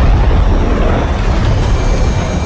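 Loud, steady low rumble with a hiss spread over it: cinematic trailer sound design.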